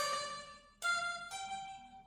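Electric guitar playing single notes of a blues scale: a few plucked notes, each struck and left to ring and fade before the next.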